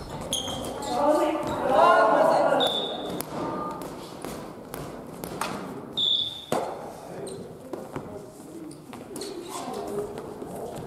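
Badminton rally in a large echoing gym: sharp racket strikes on the shuttlecock and short high shoe squeaks on the wooden floor. A voice calls out loudly in the first few seconds.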